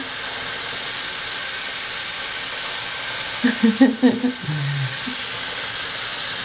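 Bathroom sink faucet running, a steady stream of tap water splashing into the basin. A brief voice is heard a little past the middle.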